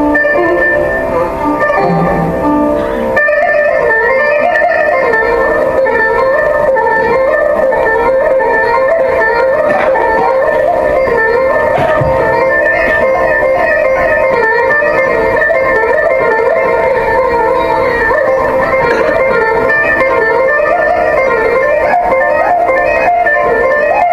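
Electric mandolins playing a Carnatic melody with sliding, ornamented notes over a steady drone. The playing becomes fuller about three seconds in.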